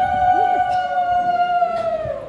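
Hulahuli, the Odia women's welcoming ululation: one long, steady high vocal call that dips and dies away at the very end.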